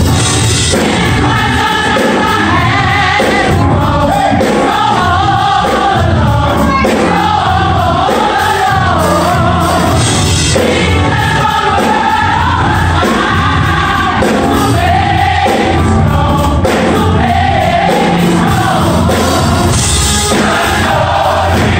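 Large gospel choir singing over a low bass accompaniment, loud and continuous.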